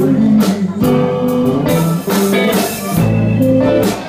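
Live blues band playing, with electric guitar lines over bass and drum kit and cymbal hits.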